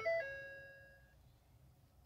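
Dashboard warning chime of a 2015 Ford F-350's instrument cluster: two quick falling notes that ring and fade within about a second.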